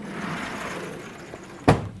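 A sliding chalkboard panel rumbling along its track for about a second and a half, then stopping with one sharp knock.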